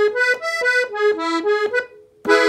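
Farinelli piano accordion's treble keys played in a quick run of short single notes, about five or six a second, stopping just before the end.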